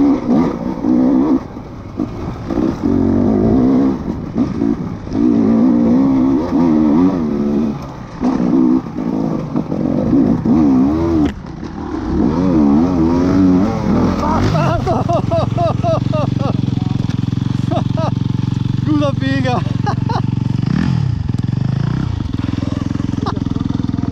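Enduro motorcycle engine being ridden hard on a rough climb, its revs rising and falling with the throttle for the first half. It then settles to a steady idle, with a quick rev blip near the end.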